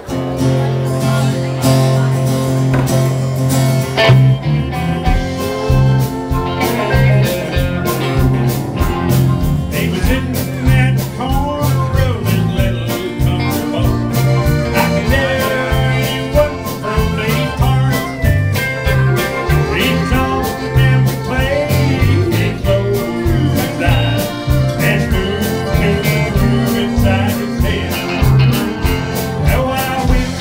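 Live Tex-Mex country band kicking in abruptly and playing an instrumental opening with a steady beat: guitars, electric bass and drums, with button accordion and pedal steel guitar on stage.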